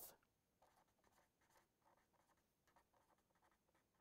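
Very faint scratching of a felt-tip marker writing on paper, in short strokes.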